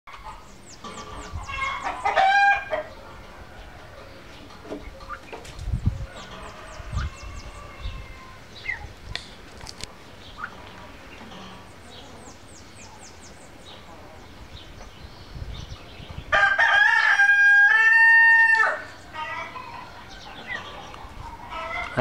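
A rooster crows once near the end, a loud call of about two seconds in two held parts. Earlier there are a shorter fowl call and quick high chirps from small birds, over a quiet farmyard background.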